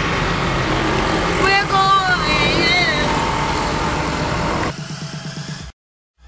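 Street traffic noise with a steady hum, heard from a car with its door open. A voice calls out briefly about a second and a half to three seconds in. The noise drops quieter near the end, then cuts off.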